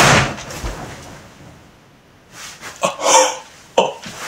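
A heavy thump as a person lands hard on a bed, dying away over about a second. About three seconds in comes a short vocal sound, then a sharp click.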